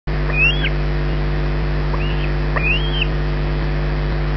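A bird calling: three short whistled notes, each sweeping up and then down in pitch, over a steady low mechanical hum.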